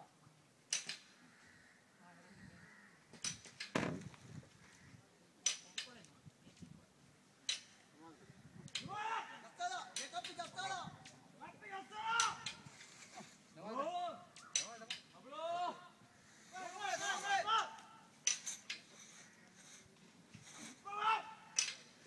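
A group of men calling out in short rising-and-falling shouts, in clusters through the second half, as they heave together on hauling ropes. Sharp knocks are scattered throughout, most of them in the first half.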